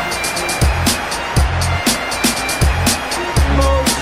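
Background music with a steady beat: deep, sliding bass thumps and crisp, quick hi-hat ticks.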